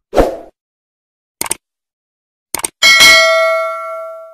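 Subscribe-button animation sound effects: a short pop at the start, a quick double mouse click about a second and a half in and another near two and a half seconds, then a notification-bell ding that rings on and fades away.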